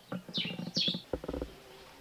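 Small birds chirping, two short falling chirps in quick succession, over a low rattling, pulsing sound.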